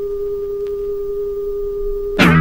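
A single steady electronic tone held at one pitch, with a faint higher overtone, in the opening of a punk record.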